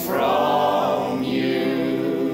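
Folk ensemble of men's and women's voices singing together in harmony, holding long notes, with the upper voices changing about a second and a half in.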